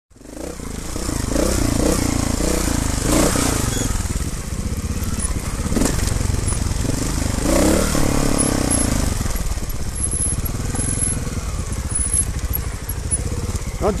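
Trials motorcycle engines running at low revs on a rocky downhill trail, with the revs rising and falling a few times as the throttle is worked.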